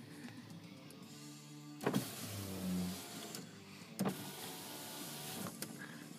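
Chrysler PT Cruiser's electric window motor running in short runs, with sharp clicks about two seconds in, about four seconds in and again near the end.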